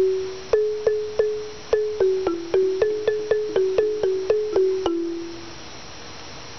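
Large outdoor wooden-barred xylophone struck again and again with round-headed mallets, at about three or four strikes a second, mostly on two neighbouring notes. Each note rings briefly and fades. The striking stops about five seconds in and the last note dies away.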